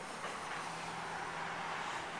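Steady background hiss inside a car cabin, with a faint low hum joining under a second in; no distinct event.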